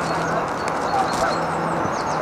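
Steady rushing background noise with faint distant voices.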